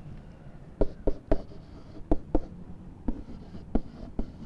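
Stylus writing by hand on a tablet surface: a string of about seven sharp, unevenly spaced taps and strokes as a word is written.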